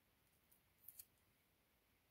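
Near silence: room tone, with a few faint short ticks from fingers handling a coloring-book page around the middle, two close together just before a second in.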